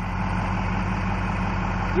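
An engine idling steadily: an even low hum with no change in speed.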